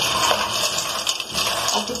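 Dry penne pasta frying in oil in a metal pot, stirred with a spatula: many small, quick clicks and rattles as the pieces tumble against the pot and each other, over a steady sizzle.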